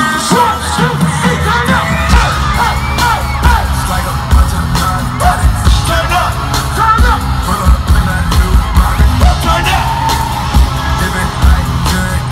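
Live hip-hop concert music through a large PA: a heavy bass beat comes in right at the start, with vocals over it and the crowd yelling.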